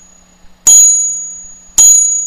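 A test tube stand struck twice with a chime mallet, about a second apart, each strike ringing out and fading. The ring is not a single pitch but several tones at once, the strongest a high, long-lasting tone.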